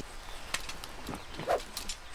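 Cartoon sound effects of a golf club being pulled out of a golf bag: a few sharp clicks and clinks, with a short animal-like grunt from the bear about one and a half seconds in.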